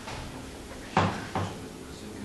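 Two short, sharp knocks of something handled, about a second in and again a moment later, the first louder.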